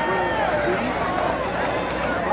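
Football spectators' voices: several people shouting and calling out at once over a steady background noise of the crowd.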